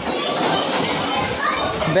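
Many children's voices chattering and calling at once in an indoor play area, a steady hubbub; one child's voice comes out clearly near the end.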